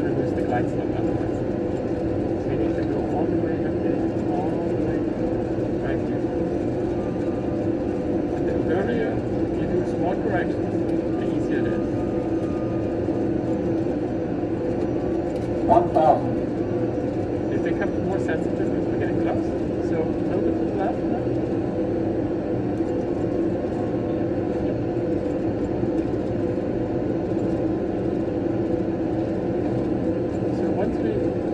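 Steady cockpit noise from an airliner flight simulator on approach: the simulated engine and airflow hum runs evenly throughout. About halfway through there is a brief, louder double sound.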